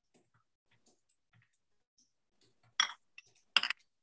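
Mostly quiet, with a few faint clinks and knocks of kitchenware being handled, the loudest two short ones near the end.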